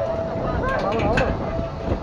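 People's voices talking, with low wind rumble on the microphone and a thin steady hum underneath.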